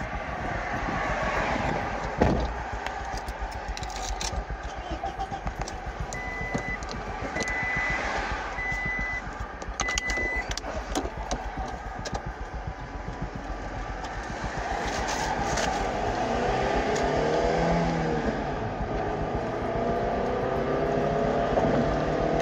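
Steady highway traffic noise with a rough rumble, heard from a roadside stop. Four short, evenly spaced high beeps sound in the middle. Toward the end a wavering engine-like drone grows louder.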